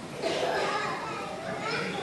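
Children playing, with high-pitched children's voices calling out but no clear words.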